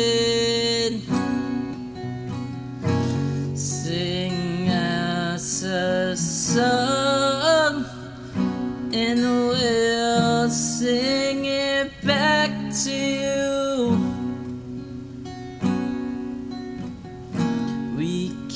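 Acoustic guitar strummed in steady chords, with a singing voice holding long notes that bend and waver in pitch.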